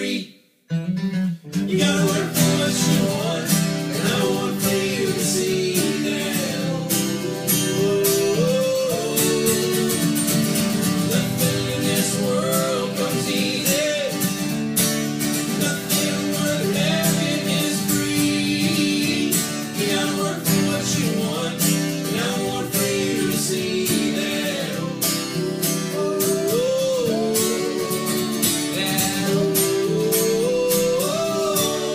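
Three acoustic guitars strummed while three men sing an acoustic song together. The sound cuts out for about a second near the start, then the song carries on.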